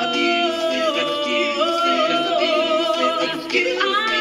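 An all-female a cappella vocal ensemble singing held chords in close harmony with no clear words; the chord moves to new pitches about a second in and again a little later.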